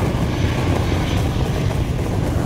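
Loud, steady rush of wind and aircraft noise, the sound effect of a skydiver's free fall from an airplane.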